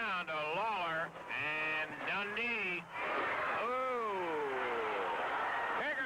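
A man's voice calling out in long, drawn-out rising and falling shouts, with a noisy wash of crowd sound swelling about three seconds in.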